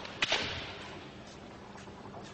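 Two sharp cracks of bamboo shinai striking, in quick succession about a quarter second in, echoing briefly in a large hall.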